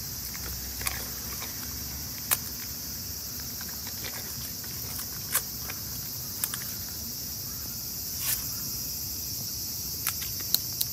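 A steady, high-pitched chorus of insects, with a handful of short sharp clicks scattered through it, the loudest a little after two seconds in and about five and a half seconds in.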